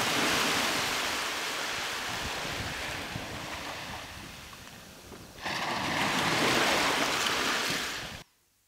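Recording of ocean surf played as a calming sound. One wave-like rush fades away over about five seconds, then a second surge rises about five and a half seconds in and cuts off abruptly at the end.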